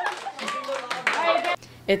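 A group of teenagers clapping, with their voices mixed in. It cuts off suddenly about one and a half seconds in.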